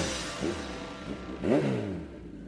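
Jingle music fading out, with a car engine revving sound effect rising in pitch about one and a half seconds in.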